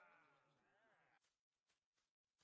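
Near silence: a faint, wavering voice fades out within the first second or so, leaving only a few faint clicks.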